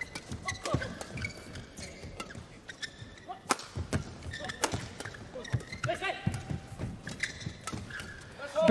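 Badminton doubles rally: rackets striking the shuttlecock in fast, irregular exchanges of sharp hits, with short squeaks of shoes on the court.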